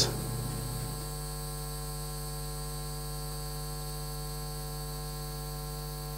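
Steady electrical mains hum with a stack of buzzing overtones, unchanging in level and pitch.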